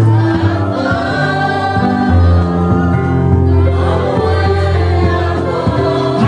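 A congregation singing gospel music together over instrumental accompaniment, with long-held low bass notes changing every second or so.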